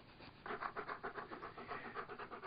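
A dog panting close to the microphone in quick, even breaths, about seven a second, starting about half a second in.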